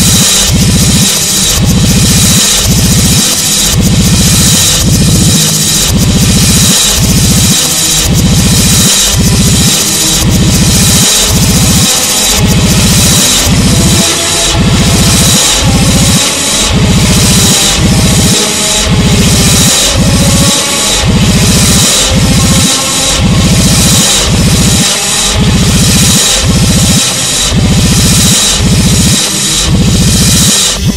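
Instrumental black metal / ritual music played in reverse: a loud, dense wall of distorted noise pulsing in an even, steady beat.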